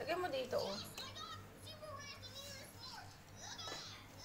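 A young child's high voice, rising and falling in pitch without clear words, loudest in the first second, over a steady low hum.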